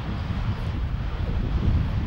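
Wind buffeting the microphone: a loud, uneven low rumble with no pitched tone in it.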